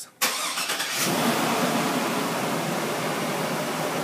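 2002 Chevy Tahoe's V8 engine starting on remote start: it catches just after the start and settles into a steady idle about a second in.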